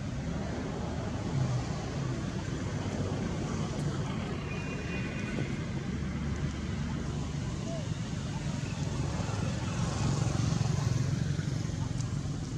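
Steady outdoor background noise with a low rumble, a little louder near the end, and a brief faint high tone a little after four seconds in.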